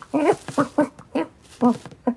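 A cartoon dog's vocal noises, done by a human voice: about five short yips that rise and fall in pitch, in quick succession.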